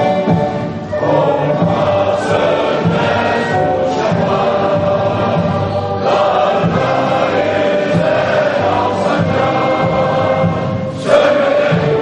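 Many voices singing together as a choir over orchestral music, in long held notes, swelling louder near the end.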